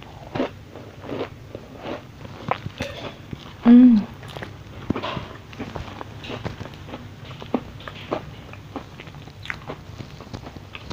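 Close-miked chewing of a crunchy cookie, with many small crunches and mouth clicks. About four seconds in there is one short, loud voiced sound.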